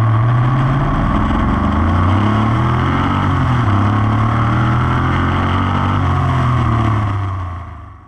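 LS1 5.7 L V8 engine running steadily, its serpentine belt driven over a newly fitted Katech billet solid belt tensioner, with no belt misalignment found. The sound fades out near the end.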